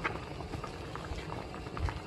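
Rice-cake and dumpling soup boiling in a wide pan on a gas stove, the broth bubbling steadily with many small pops.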